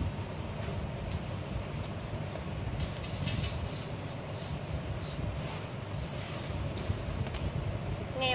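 Steady low background rumble, with faint short puffs about once a second as the rubber hand bulb of an aneroid blood-pressure cuff is squeezed to pump up the cuff.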